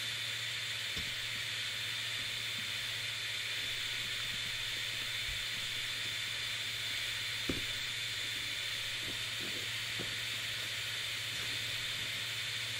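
Steady background hiss with a faint high whine, and a few faint knocks as a pop filter's gooseneck and clamp are handled in foam packing, the most noticeable about seven and a half seconds in.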